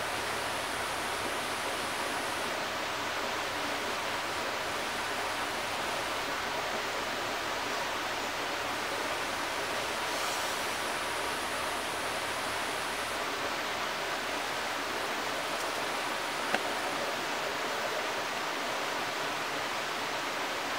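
Steady outdoor rushing noise, like running water. A faint, high, thin buzz comes and goes several times, and there is one sharp click a few seconds before the end.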